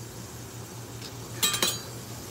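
Kitchenware clinking: a quick cluster of light clinks about one and a half seconds in, over a faint steady low hum.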